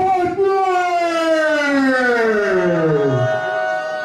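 A ring announcer's long drawn-out call over a PA system, a single held note that slides steadily down in pitch for about three seconds. A steady held tone takes over near the end.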